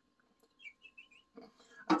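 A man making bird noises with his mouth: a quick run of short, soft, high chirps about half a second to a second in.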